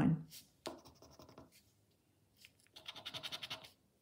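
The edge of a plastic poker chip scratching the scratch-off coating from a paper scratchcard in rapid back-and-forth strokes: a short run about a second in, and a longer run of about a second near the end.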